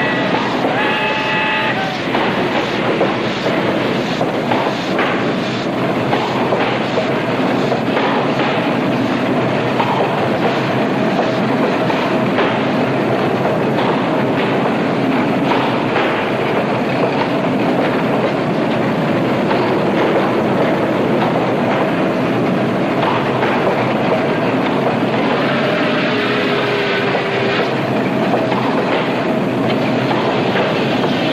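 Passenger train in motion: a steady rumble with the clatter of wheels on the rails. A short high pitched tone sounds about a second in.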